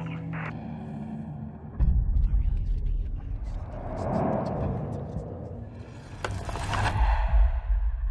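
Suspense trailer score and sound design: a sudden deep boom about two seconds in opens a sustained low rumble, with a swell in the middle, scattered ticking clicks and a short hissing surge near the end.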